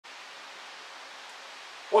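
Steady, even hiss of background room noise with a faint low hum, until a man starts speaking right at the end.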